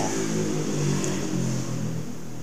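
Low, steady hum of a motor vehicle engine whose pitch shifts slightly, with a steady high hiss behind it.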